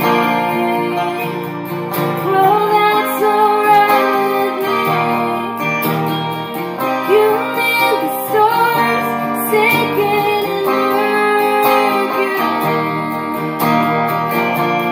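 A woman singing with live electric guitar accompaniment, her voice over ringing guitar chords.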